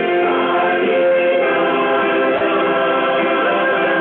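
Choir singing gospel music in long, held chords, heard through a telephone conference line that cuts off the high end.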